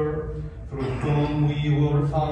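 A man's voice intoning a prayer on a near-steady pitch, with a short break about half a second in.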